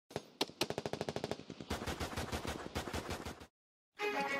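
Automatic gunfire: a couple of single shots, then two long bursts of rapid fire, which cut off suddenly shortly before the end.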